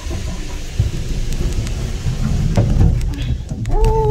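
Gondola cabin rumbling and rattling with scattered knocks as it speeds up through the station's wheel track and swings out into the open, heard from inside the cabin. A steady high tone begins near the end.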